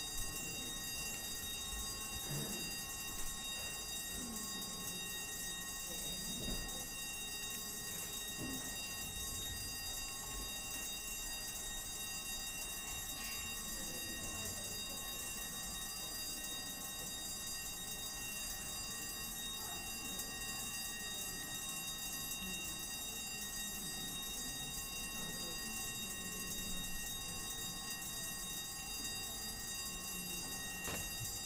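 Council chamber division bells ringing without a break, the signal calling councillors to take their places for a recorded vote.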